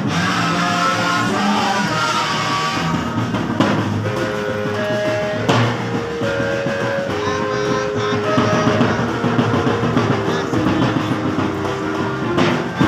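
Live band music: trumpets playing a melody of held notes over drums.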